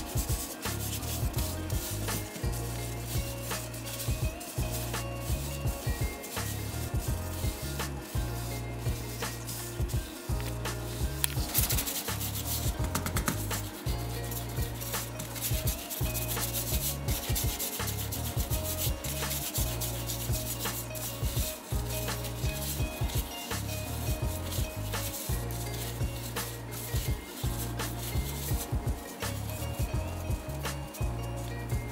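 Hands in plastic gloves rolling yeast dough back and forth on a tabletop, a repeated rubbing, over background music with a steady bass line.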